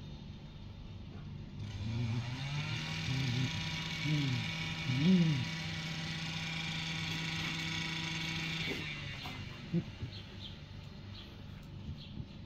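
A motor starts about two seconds in with a quick rise in pitch, hums steadily at one pitch and cuts off about nine seconds in. A few short sounds that rise and fall in pitch come over it early on, and a few faint clicks follow near the end.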